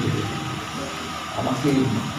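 A man's voice in a pause between phrases, a short sound about one and a half seconds in, over steady room noise.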